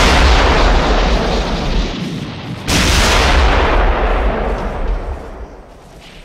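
Two heavy artillery blasts, the second about three seconds in, each a sudden loud boom with a deep rumble that fades away over a few seconds.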